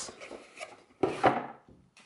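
Cardboard packaging being handled: one short scraping rustle about a second in as the box sleeve is slid off and set aside.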